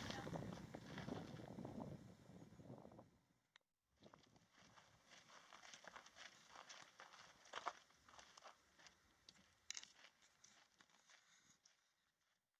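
Near silence, with faint, irregular crunches of footsteps on a gravel trail.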